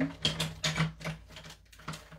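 Light clicks and taps of small hard items being handled on a craft desk, several a second, pausing past the middle with one more tap near the end, over a low steady hum.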